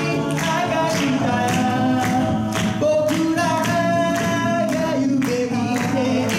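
A cappella group singing live in close harmony, several voices holding chords over a steady percussive beat.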